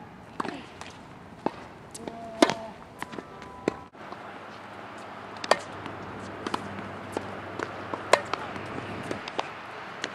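Tennis ball struck by a racket and bouncing on a hard court: a series of sharp pops, the loudest about two and a half seconds in.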